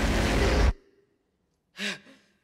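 A person's heavy sigh: one loud breath of about a second. A short, faint voiced catch of breath follows near the end.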